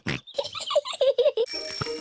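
Cartoon bicycle bell ringing, coming in about three-quarters of the way through and held steady, after a run of short pitched chirps.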